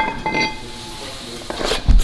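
A cast-iron brake disc clinks against the steel platform of a weighing scale and rings briefly, followed near the end by a dull thump.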